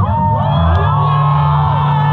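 Hardcore show crowd cheering, whooping and yelling right after the band's music breaks off. Under the voices, a steady low hum from the stage amplifiers sets in under a second in and holds.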